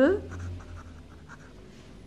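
Ballpoint pen writing on squared notebook paper: faint, short, irregular scratches of the pen strokes.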